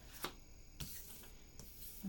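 Tarot cards being handled as a card is drawn from the deck: faint rubbing with two light clicks, about a quarter second and just under a second in.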